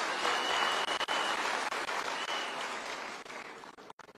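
Audience applauding, the clapping dying away near the end, with a thin high tone briefly heard over it.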